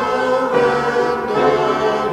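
A church congregation singing a hymn with piano accompaniment, a man's voice close to the microphone leading, in long held notes.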